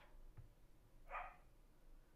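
A single short, faint dog bark about a second in.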